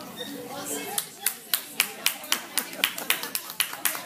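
Hands clapping in a steady rhythm, about four sharp claps a second, starting about a second in, over background chatter.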